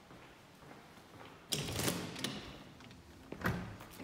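A glass door to the courtyard being opened: a sudden clatter of the handle and door about one and a half seconds in, a click soon after, then a second sharp knock a little before the end.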